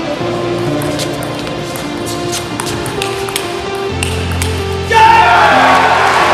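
Background music over a table tennis rally, with the ball clicking sharply off bats and table a number of times. About five seconds in, a crowd suddenly breaks into loud cheering and applause as the point is won.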